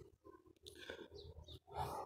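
Near-silent pause between speech: faint room noise, with a soft breath near the end just before speaking resumes.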